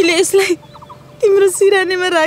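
A woman's voice speaking in high, trembling tones in two phrases: a short one at the start and a longer one from just past the middle, with a pause between.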